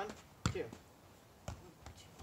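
Soccer balls being juggled on foot and knee: a few short, dull thuds of touches on the balls, spaced unevenly. A man counts the touches aloud ("two").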